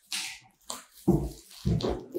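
Plastic wrapping rustling as a wrapped plastic trash can is handled, with a couple of short low bumps as the cardboard box is set down.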